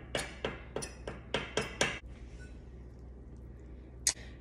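A metal fork clinking against a mixing bowl of flour, a quick series of about eight clinks over the first two seconds.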